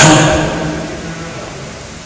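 A pause in a man's speech: his last word ends at the start, then only faint, steady room noise and microphone hiss that slowly fade.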